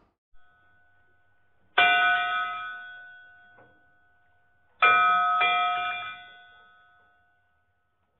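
A bell struck and left to ring: one strike, then a few seconds later two strikes in quick succession, each fading away over about two seconds.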